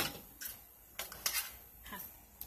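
A few light knocks and clinks of pots and objects being handled and set down on a kitchen sink, as plants are moved onto it.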